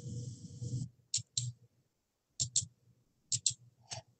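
Seven sharp, short clicks, most in quick pairs about a fifth of a second apart, typical of clicking on a computer. A faint hiss dies away within the first second.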